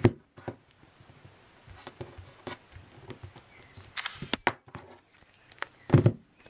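An iPod in a leather flip case being handled, closed and set down on a wooden table: scattered light taps and clicks, with a louder cluster of knocks and a rustle about four seconds in.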